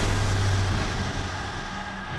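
Trailer sound design under a title card: a rushing noise that swells just before and slowly fades away, over a low steady drone.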